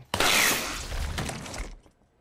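Sudden crash of a glass ketchup bottle shattering, splattering sauce, fading out over about a second and a half.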